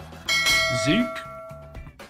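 A bright bell-chime sound effect, the ding of a subscribe-button notification-bell overlay. It strikes suddenly just after the start and rings for about a second and a half as it fades.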